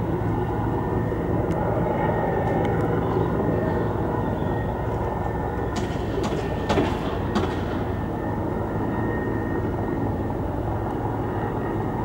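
Steady low engine rumble of vehicles running, with a few sharp knocks about six to seven and a half seconds in.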